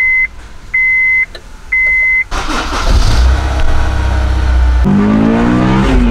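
Three electronic beeps from the 2003 Honda S2000's dash, then its F20C inline-four engine starts a little over two seconds in and runs loudly, its pitch moving up and down in the last second as it is revved.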